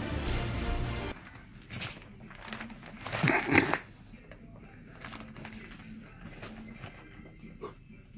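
Background music cuts off about a second in, leaving quiet room tone. About three seconds in, a person lets out one short, loud, wordless vocal noise.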